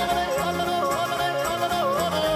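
Swiss folk yodeling: a high voice holds a wavering note and leaps briefly up to a higher register and back, the typical yodel break. A band accompanies it with a steady, rhythmic bass line.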